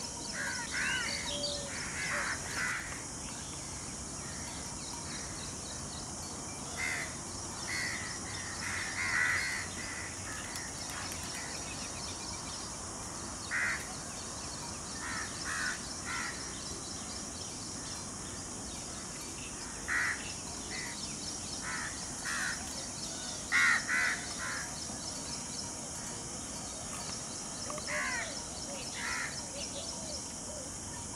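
Wild birds calling: short calls in scattered bouts of one to three, the loudest a little past three-quarters of the way through, over a steady high hiss.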